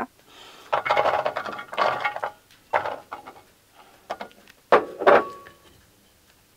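Peeled garlic cloves tipped from a small bowl into a black metal baking tray, clattering in a few bursts, the last with a short ring from the tray.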